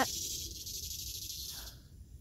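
A high, steady insect buzz that cuts off suddenly near the end, over a faint low rumble.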